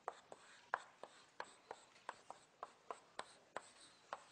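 Chalk writing on a blackboard: a string of short, faint taps and scratches, about three a second.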